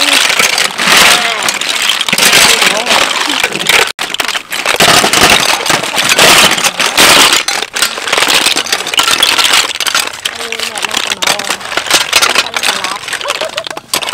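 Many snail shells clattering and rattling against each other and the metal basin as a large batch of snail salad is stirred and tossed with a metal ladle, a dense run of small clicks.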